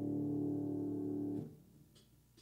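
Closing chord of a solo Yamaha grand piano piece, ringing and then cut off abruptly about a second and a half in, followed by near silence and a faint click.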